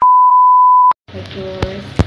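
A loud, steady single-pitch test-tone beep, the 1 kHz reference tone that goes with TV colour bars, lasting just under a second and cutting off suddenly. After a brief silence, room sound and a woman's voice begin.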